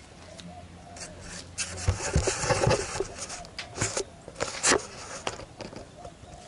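Handling noise on a rod-mounted action camera: a run of knocks, bumps and scrapes as the rod is moved. It is loudest from about two to five seconds in and sparse after that.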